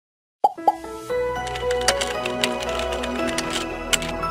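Animated intro jingle: about half a second of silence, then two quick pitched pops, followed by a bright synthesized music sting dotted with sharp clicks, the loudest click near the end.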